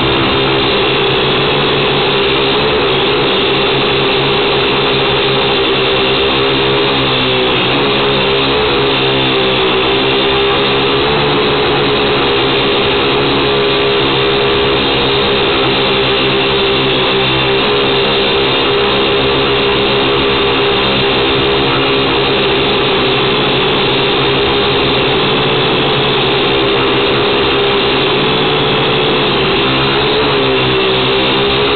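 Syma X1 quadcopter's small electric motors and propellers buzzing loudly, picked up right next to them by the onboard camera's microphone. The pitch wavers up and down every few seconds as the throttle changes.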